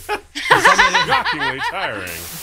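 A person laughing in a quick run of rising-and-falling laughs, starting about half a second in.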